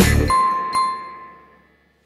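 Background music cuts off, and a notification-bell sound effect from a subscribe-button animation chimes twice in quick succession and rings out.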